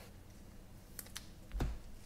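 Faint handling sounds of trading cards and plastic card sleeves on a tabletop: two light clicks about a second in, then a soft thump near the end.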